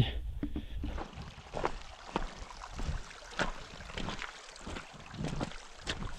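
Shallow water trickling and gurgling over stones, with scattered small splashes and clicks at irregular intervals.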